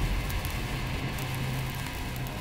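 Fire sound effect: flames crackling over a low rumble that slowly fades away.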